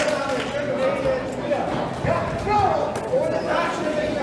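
Shouted calls from ringside voices during an amateur boxing bout, with a few dull thuds of impacts.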